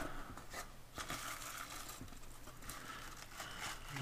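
Faint rustling and crinkling of crinkle-cut paper shred packing in a cardboard box as it is handled, with a few short crackles.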